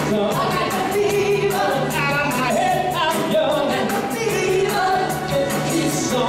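Live band playing beach music to a steady drumbeat, with several voices singing.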